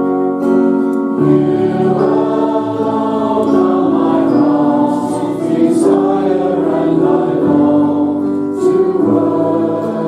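Church congregation singing a worship song together.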